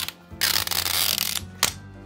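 Adhesive seal strip being peeled off a plastic Mini Brands capsule ball: a sustained tearing rasp starting about half a second in and lasting about a second, then a short click.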